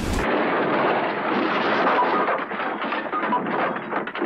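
Sound effect of a train running past: a loud, dense, steady rush of noise that cuts in suddenly and eases slightly near the end.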